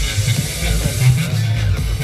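Loud music with a heavy, steady bass line.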